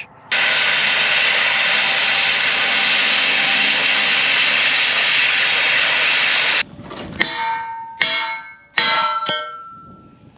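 Gas cutting torch hissing steadily as it cuts through four-by-six steel box beam, stopping suddenly about six and a half seconds in. Then several ringing clanks of steel striking steel.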